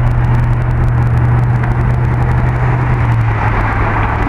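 Street traffic: a vehicle engine running with a steady low hum that weakens near the end, over the noise of the road.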